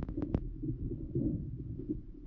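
Muffled underwater rumble of river water heard through a GoPro camera submerged in its housing, with three or four sharp clicks in quick succession in the first half second.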